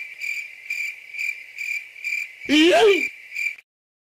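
Cricket chirping sound effect, a steady high chirp pulsing about two to three times a second: the comedy 'crickets' cue for an awkward silence. About two and a half seconds in, a short, louder voice-like sound rises and falls in pitch over it.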